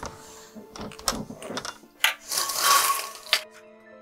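Background music, with several sharp knocks and clicks of hands handling gear at an open window. Then, about two seconds in, a louder rushing noise lasts about a second and ends with a knock.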